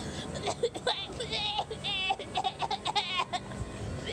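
Children's high-pitched voices giggling and squealing in short wavering bursts, with some indistinct chatter.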